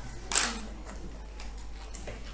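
One short, sharp crunch about a third of a second in, a bite into a crisp papad cracker, over the quiet clatter of a meal.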